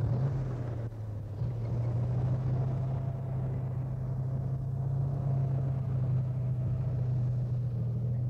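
A vehicle engine running steadily, a low even drone.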